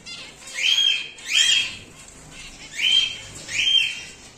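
Cockatiel giving four loud whistled contact calls in two pairs. Each call sweeps up in pitch and then holds briefly at the top.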